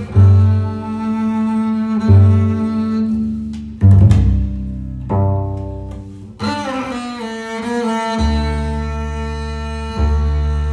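Schnitzer double bass with gut strings played solo: low notes plucked one at a time every second or two, each ringing and fading, under a higher note held throughout.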